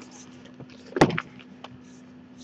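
A single sharp knock about a second in, with a few faint clicks, over a steady low electrical hum.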